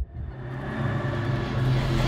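Low, steady soundtrack drone swelling gradually louder, with a hiss building above it: a dark build-up in a horror intro score.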